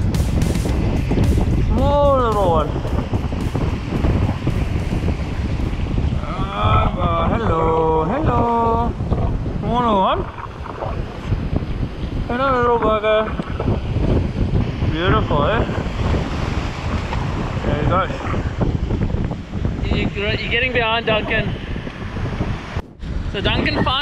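Strong wind buffeting the microphone over breaking surf, a dense low rumble. Short calls from a voice break in at intervals.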